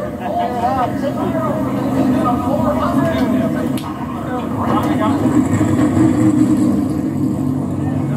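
Television broadcast audio of pit-road background, heard through a TV's speaker: a steady low rumble with indistinct voices over it.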